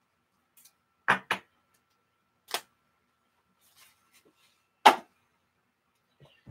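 A few sharp knocks and taps of things being handled on a tabletop: a quick pair about a second in, one more in the middle, and the loudest near the end, with silence between.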